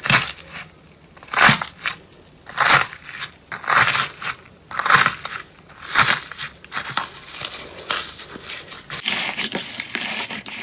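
Hands pressing into pink slime with a hardened top skin and foam beads, cracking the crust in crunchy crackles about once a second. The crackling becomes denser and more continuous as the broken pieces are squished into the slime near the end.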